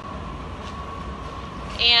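Steady roar of a glassblowing studio's gas-fired furnace and glory hole, with a faint steady high hum running through it.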